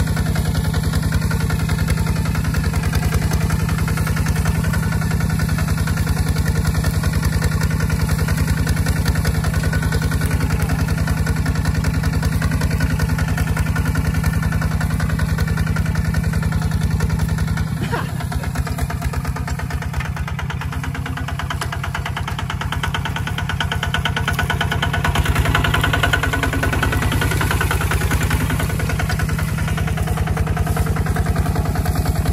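Kubota ZT155 walking tractor's single-cylinder diesel engine running steadily under load while pulling a plow through dry soil. Its note drops for several seconds past the middle, with a single knock where it drops, then picks up again.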